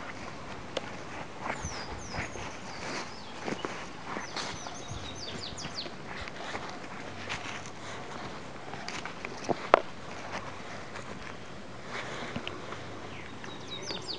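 Footsteps through grass, with soft knocks and rustles as the camera is carried, and one sharper knock about two-thirds of the way through. Birds chirp a few times in the first half.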